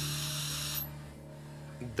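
Pressurised nitrogen gas venting from a flask as a hissing jet, the hiss cutting off suddenly a little under a second in, over a steady low hum.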